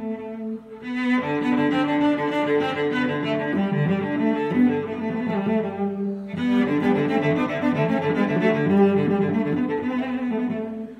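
Background music of slow, sustained notes, with short breaks about half a second in and again around six seconds in.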